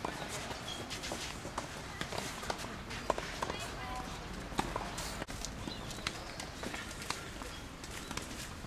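Tennis ball struck by racquets and bouncing during a doubles rally: irregular sharp pops, with players' footsteps on the court.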